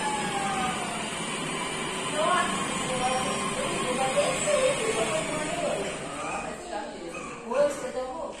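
Indistinct voices of people talking at a distance, loudest briefly near the end, over a steady high hiss.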